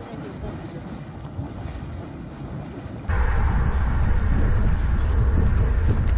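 Geyser vent boiling and splashing, an even watery wash, for about three seconds. Then a sudden cut to louder, rumbling wind buffeting the microphone of a camera on a moving bicycle.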